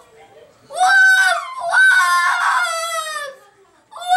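A boy crying loudly in high-pitched wails: two long wails, the second sliding down in pitch as it trails off.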